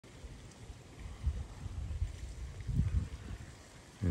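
Low, uneven rumble of wind buffeting the microphone, swelling a little about a third of the way in and again near the end.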